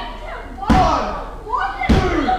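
A referee's hand slapping the wrestling ring mat twice, about a second apart, counting a pinfall, with voices calling out after each slap.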